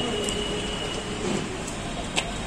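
Steady outdoor background noise with a faint, thin high whine running through it, and a few brief, indistinct voices in the distance.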